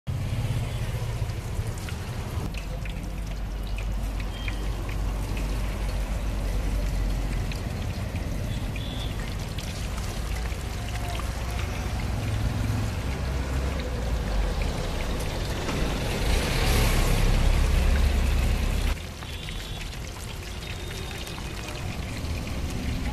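Wet squelching and plastic-bag rustling of raw chicken wings being kneaded by hand into a masala marinade, over a steady low street rumble. The noise swells for a few seconds near the end, then drops suddenly.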